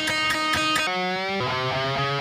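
Electric guitar with newly fitted strings being tuned by ear: a held note, then about halfway through a string whose pitch slides upward as its tuning peg is turned, then a lower string plucked again and again.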